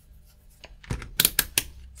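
Rotary function selector of a Zoyi ZT219 multimeter being turned, giving a quick run of about five sharp detent clicks a second in, as the meter is switched on.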